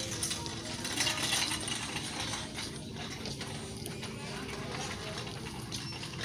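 Shop ambience: a steady murmur with faint distant voices, and a brief rustle of handling noise about a second in.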